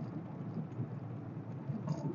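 Steady in-cabin drone of a 1987 VW Fox's 1.6-litre four-cylinder engine and tyre noise while cruising along the road, heard as a low rumble inside the car.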